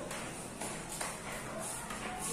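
Quiet rustling of satin ribbons with a few light ticks from a small metal key ring as the ribbons are handled and tied onto the ring.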